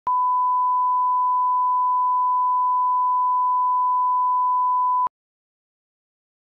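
Broadcast line-up test tone: one steady, pure beep at a single pitch, held for about five seconds and then cut off abruptly. It is the reference tone that runs with colour bars at the head of a tape, used to set audio levels.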